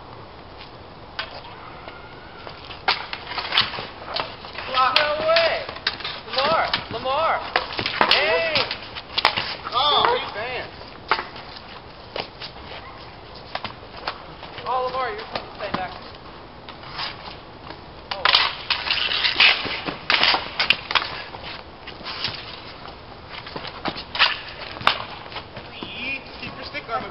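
Street hockey sticks clacking against each other and slapping the concrete, with sharp hits coming in flurries during play, and players shouting between them.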